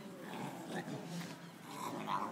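A Scottish Terrier vocalising with rough growl-like sounds, then a short, sharper bark-like sound near the end, over people talking.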